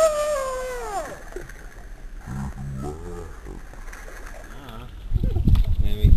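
A single drawn-out wail that rises and then falls in pitch, lasting about a second and a half at the start. Faint low voices follow, and near the end there is loud low rumbling from wind or handling on the microphone.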